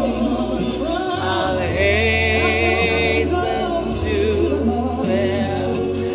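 Gospel song with choir singing over a steady bass line, including a held, wavering high note about two seconds in.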